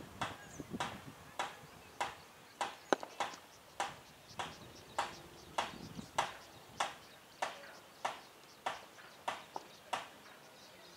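A steady series of sharp claps or clicks, about one and a half to two a second, with one louder crack about three seconds in; the series stops at the very end.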